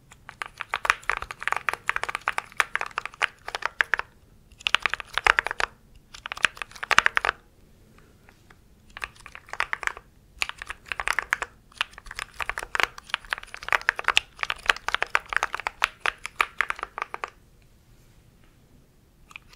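Mechanical keyboard keys clacking under fast finger typing close to the microphone. They come in runs of one to several seconds, broken by short pauses; the longest run comes in the second half.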